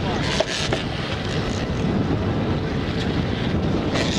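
Boat engine running as the boat backs down, under a steady rush of water and wind on the microphone, with a few short splashes in the first second as the hooked blue marlin thrashes at the surface.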